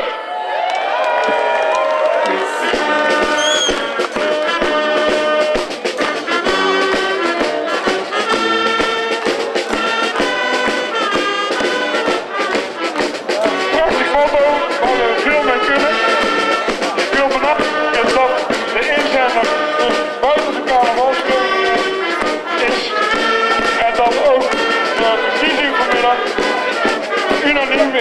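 Brass band music with held, pitched notes, playing steadily and loudly without a break.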